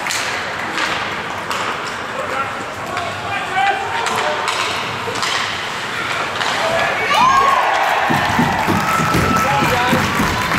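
Ice hockey play: repeated sharp knocks of sticks and puck on the ice and boards, with players' shouts over them. A drawn-out call comes about seven seconds in, and more voices follow toward the end.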